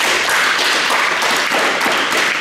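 About a dozen children applauding, a dense, steady run of hand claps.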